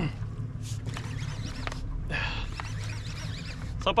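Steady low hum aboard a small fishing boat at sea, with a short breathy rush about two seconds in and faint voices behind.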